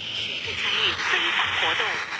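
A distant FM broadcast, about 210 km away, heard through a Tecsun PL-380 portable radio's speaker: a voice talking under static hiss that grows stronger about half a second in, the sign of a weak signal at the edge of reception.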